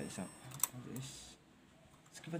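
A single sharp click about two thirds of a second in, with light handling noise from the motorcycle headlight and its wiring connectors being handled.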